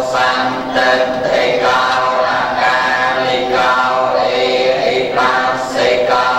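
Buddhist prayers chanted in unison by a group of voices, a man leading through a microphone, in phrases of a second or two with short breaks between.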